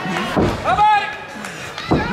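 A single voice calls out in a large hall, rising and then falling in pitch, and a sharp knock comes near the end.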